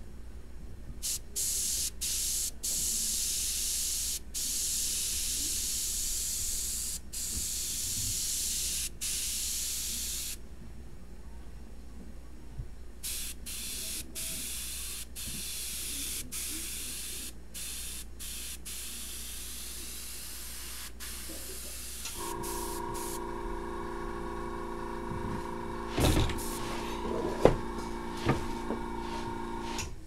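Airbrush spraying paint in a run of hissing bursts, each started and stopped with the trigger; the artist feels its atomization is a little off. About two-thirds of the way through the spraying stops and a steady hum with several pitches sets in, with a couple of knocks near the end.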